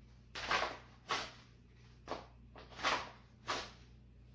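Five short, separate rustling scrapes as a Glock 19 pistol is drawn from and pushed back into an inside-the-waistband holster, with the shirt and jeans moving with it.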